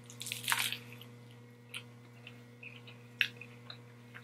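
A bite into a lettuce-wrapped burger about half a second in, then close-up wet chewing with a few small sharp mouth clicks. A steady low hum runs underneath.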